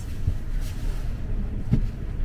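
Steady low rumble and wind noise inside a moving aerial cable car cabin as it travels along its cables.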